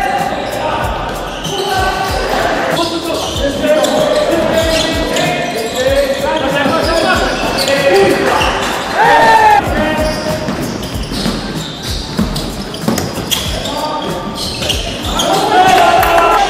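Basketball game sounds in a large sports hall: the ball bouncing on the wooden court, with players calling out over the play.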